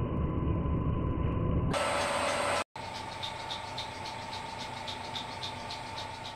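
Metal lathe turning an aluminium billet block held in a four-jaw chuck, in several short edited takes. First a steady low run, then a brief brighter burst of noise, then a sudden short gap. After that comes a steady whine with a fast, even ticking of about five a second.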